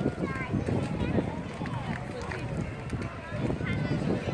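Indistinct chatter of several passers-by talking at once over steady outdoor background noise.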